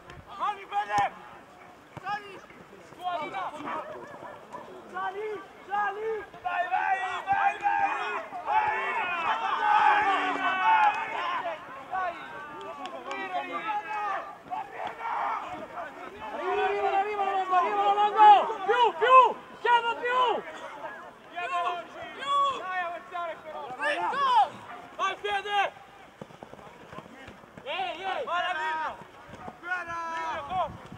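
Several voices shouting and calling out in short, indistinct bursts, some overlapping, from the sideline and pitch of a rugby match.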